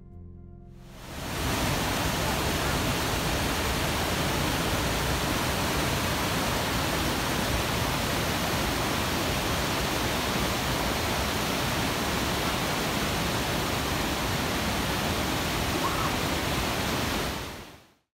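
Waterfall cascading over boulders: a steady rush of water that fades in about a second in and fades out near the end.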